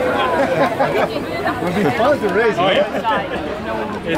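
Several people talking and chatting at once, voices overlapping.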